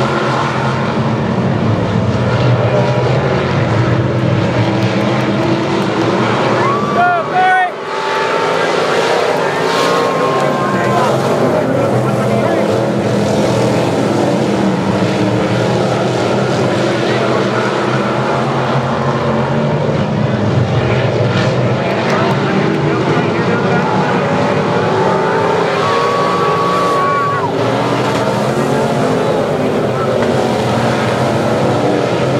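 A pack of dirt modified race cars running hard together, their engines overlapping, the pitch wavering as they power through the turns, with a brief drop in level about seven seconds in.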